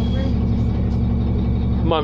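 2003 New Flyer D40LF diesel bus running, heard from inside the passenger cabin as a steady low engine drone.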